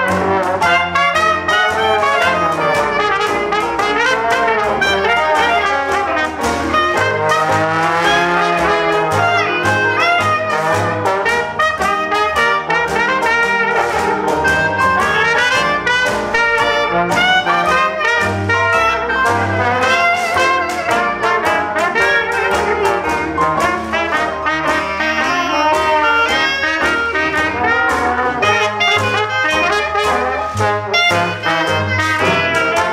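Traditional jazz band playing live, with cornet, clarinet and trombone weaving together in ensemble over piano, banjo, string bass and washboard keeping a steady beat.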